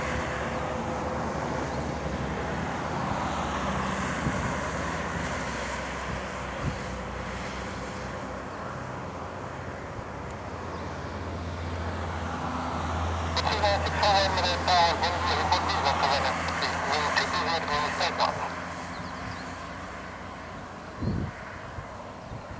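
Distant Dassault Falcon 50 trijet, its turbofan engines a steady rush as it flies a touch-and-go circuit. About thirteen seconds in comes a run of short repeated bird calls lasting some five seconds, louder than the jet.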